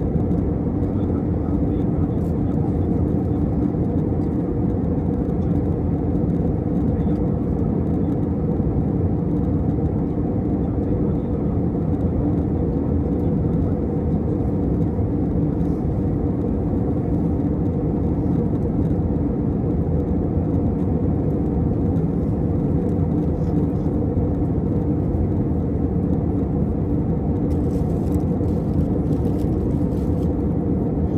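Steady cabin noise of a jet airliner in flight, heard from a window seat: an even, low rushing of engines and airflow with no change in level.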